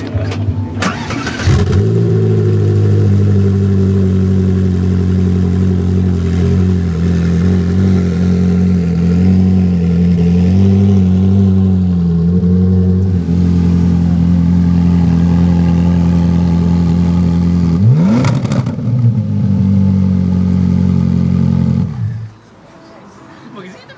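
Ferrari 458 Challenge's 4.5-litre V8 starting, catching about a second and a half in, then idling steadily. Near the end it gives one short, quick rev and drops back to idle.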